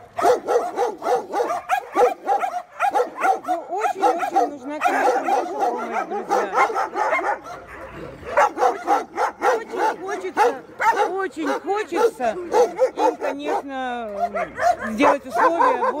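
Many dogs barking at once in an unbroken, overlapping chorus, with some high yips mixed in. Near the end a few longer calls fall in pitch.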